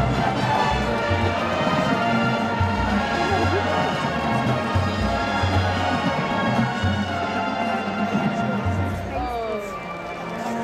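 A college marching band playing: brass holding sustained chords over a steady beat of bass drums. The level dips slightly near the end.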